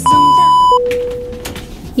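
A loud, steady, high electronic test-tone beep, the kind that goes with TV colour bars, lasting under a second. A lower tone follows and fades away over about a second.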